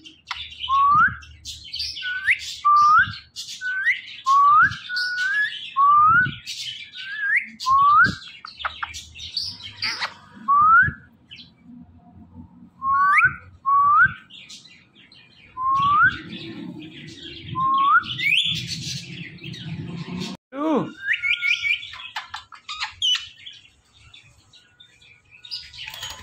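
Indian ringneck parakeet calling: a run of short upward-sliding chirps, about one a second, with higher chatter over them. After a pause near the end comes one long downward-gliding call, then a few quick high notes.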